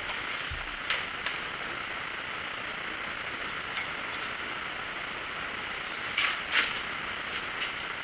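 Steady background hiss of room tone, with a few faint ticks and a soft low thump about half a second in, and two short puffs of noise about six seconds in.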